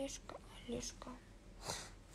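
Quiet whispered and murmured speech: a few short voiced sounds in the first second, then a breathy hiss near the end.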